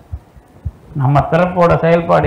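A man lecturing in Tamil pauses for about a second, then resumes speaking. During the pause there are a few faint, soft low thumps.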